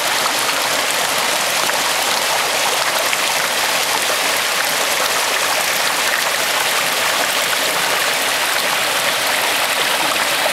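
Creek water rushing steadily over rocks and through a small cascade.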